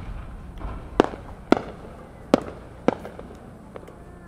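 Fireworks going off: four sharp bangs, unevenly spaced over about two seconds starting a second in, then a fainter pop near the end.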